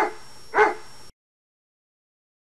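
A dog barking twice, about half a second apart, over a faint hiss that cuts off suddenly about a second in.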